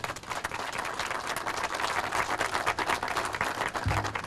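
A small group of people applauding: many overlapping hand claps.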